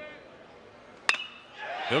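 A metal baseball bat strikes a pitched ball hard, giving one sharp ping about a second in that rings briefly.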